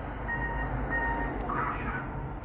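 Two short high electronic beeps, about half a second apart, over a steady low rumble.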